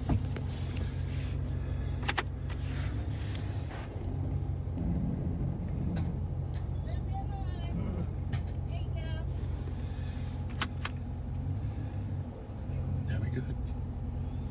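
Pickup truck engine idling with a steady low hum, heard inside the cab as the truck backs slowly up to a trailer hitch. A few sharp clicks come every couple of seconds.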